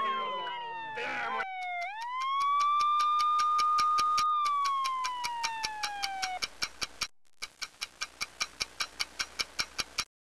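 Clock ticking quickly, about five ticks a second, under a pitched siren-like tone that slides down, swoops back up and holds, then slides down again and stops about six seconds in. The ticking pauses briefly a little after seven seconds, then runs on and cuts off sharply.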